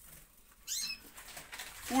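A caged Gloster canary gives one short high chirp, a quick falling sweep, a little under a second in.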